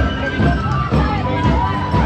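Carnival street music: voices singing a melody together with instruments, with no break.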